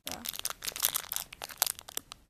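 Clear plastic wrapper of a Sculpey III polymer clay packet crinkling as it is handled close to the microphone, a dense run of crackles.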